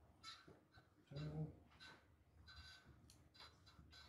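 Faint, short squeaks of a marker writing on a whiteboard, several separate strokes, with a few light ticks a little after three seconds in. A brief low murmur of a man's voice about a second in.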